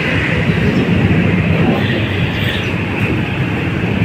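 Steady, loud rumbling background noise with no distinct knocks or clicks, like a machine or traffic running nearby.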